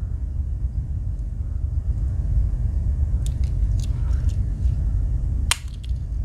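Swiss Army knife tools clicking against their backsprings as they are handled, with a few faint clicks and then one sharp snap about five and a half seconds in, over a steady low hum.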